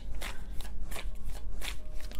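A deck of tarot cards being shuffled by hand: a run of short papery swishes of card against card, about three a second.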